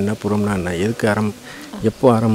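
A man speaking, a steady stream of talk with a few drawn-out syllables and a softer stretch near the end.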